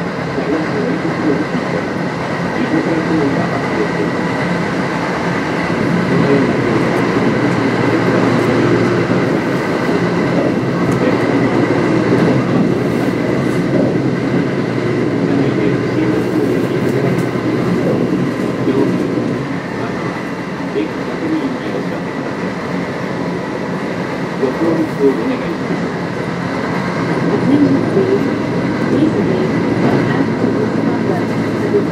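Kintetsu 1026 series electric train with Hitachi GTO-VVVF traction equipment running between stations, heard from inside the car: a steady rumble of wheels on rail with some rail-joint clatter and a few steady high tones over it.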